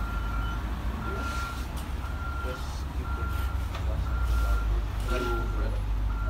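A high electronic beep repeating steadily about once a second, six times, over a constant low rumble.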